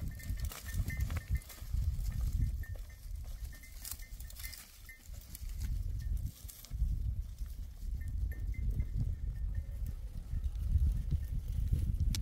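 A herd of goats moving over a rocky hillside, a small bell clinking on and off in a high tone, over a steady low rumble.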